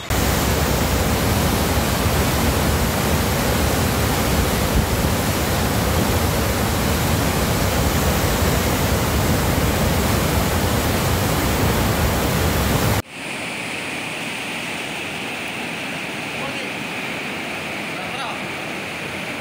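Water discharging through the open sluice gates of a reservoir dam, a loud steady rush of spray and falling water. About thirteen seconds in it cuts to a quieter, steady rush of muddy floodwater flowing fast across a road.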